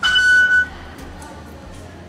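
MRT ticket-gate card reader beeping once as a card is tapped and accepted: a single steady high tone of about half a second, followed by the hum of the station concourse.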